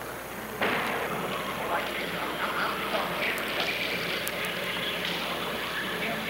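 Steady background noise of a large hall with indistinct voices in the distance; the noise steps up abruptly about half a second in.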